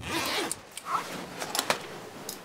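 A zipper on clothing pulled, with fabric rustling, then a few light sharp clicks as small items are handled.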